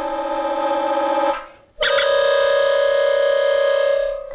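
Film-score wind instruments: a held note with a slight wobble cuts off about a third of the way in. After a brief gap comes a loud, sudden brass-like blast that holds one pitch steadily to the end, a comic musical sting.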